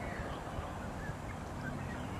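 Wind buffeting the microphone in a steady low rumble, with several faint, short bird calls scattered over it.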